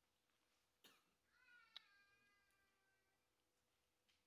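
Near silence: quiet room tone, with a faint click about a second in and then a faint pitched call lasting about two seconds.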